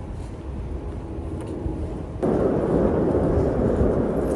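Outdoor street ambience: a low steady rumble, then a little over two seconds in an abrupt jump to a louder, even rushing noise.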